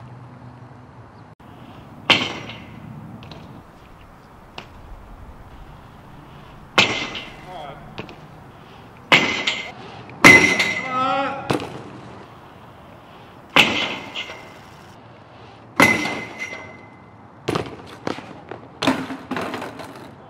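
A BMX bike hitting a steel light-pole jam over and over: about eight sharp metal clanks spaced a few seconds apart, several of them ringing briefly, as the tyres strike and ride the pole. A short shout is heard about ten seconds in.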